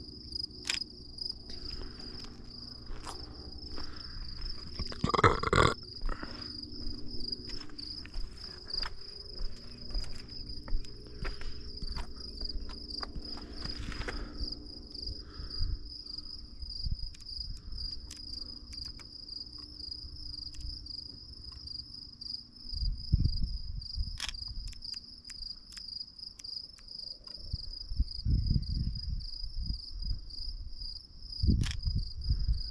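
Crickets chirping in a steady, fast, even pulse throughout. Over it come scattered clicks and rustles of handling, a louder rustle about five seconds in, and a few low thumps later on.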